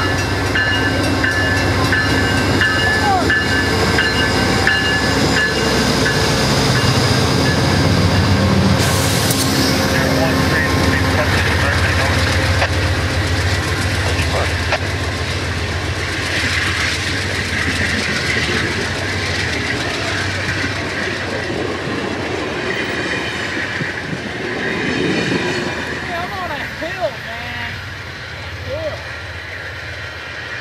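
Amtrak GE Genesis diesel locomotive pulling out, its engine rising in pitch as it throttles up about six to ten seconds in. Passenger cars follow, rolling by with wheels clicking over rail joints, and the sound fades slowly as the train moves off, with a few short wheel squeals near the end.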